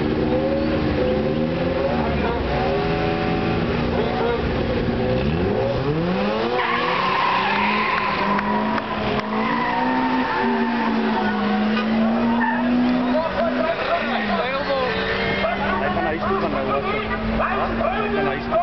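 Turbocharged Toyota 4A-GE four-cylinder engine in a Datsun 1200 drag car revving in repeated bursts on the start line, then launching with tyre squeal about six seconds in and accelerating away, its note dropping at each gear change as it fades into the distance.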